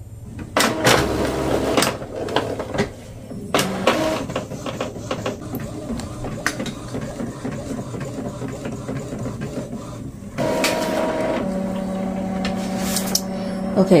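Epson EcoTank ET-2803 inkjet printer printing a page of sublimation paper. Clicks and mechanism noise start about half a second in, followed by the print head shuttling back and forth in a fast repeating pattern. From about ten seconds in there is a steadier motor whine.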